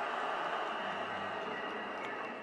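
A large crowd applauding: a steady wash of many hands clapping.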